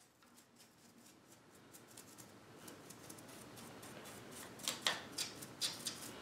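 Faint scratching and light clicking as sawdust and gunk are cleared from the metal ledge of a table saw's throat-plate opening, with a few sharper clicks near the end.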